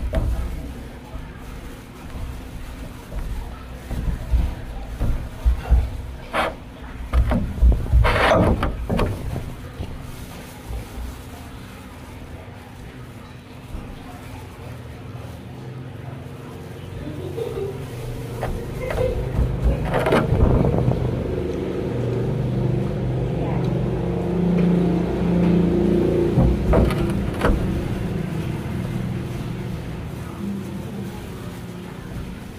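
A low motor hum that swells and holds from a little past halfway, with scattered clicks and knocks over it.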